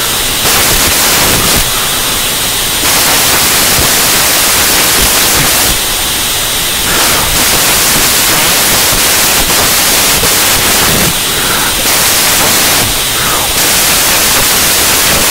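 Loud, steady static hiss filling the whole sound, its upper part dulling briefly several times. This is noise on the audio feed, not a sound in the room.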